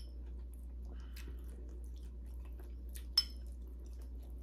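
Quiet eating sounds: faint clicks of a fork against a plate and soft chewing, with one sharp clink about three seconds in, over a steady low hum.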